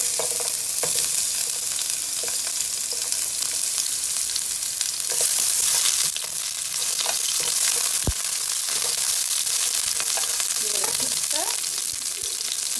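Sliced onion sizzling in hot oil in a non-stick frying pan, a steady hiss that swells briefly around five to six seconds in, as the pieces are stirred with wooden chopsticks. One sharp knock about eight seconds in.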